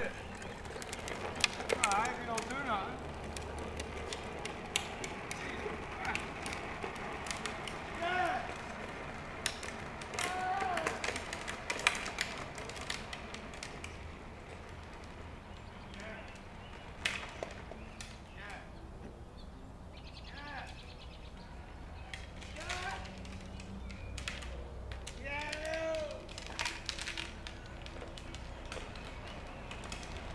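Faint, indistinct voices at a distance over a low outdoor rumble, with scattered clicks and knocks and occasional bird calls.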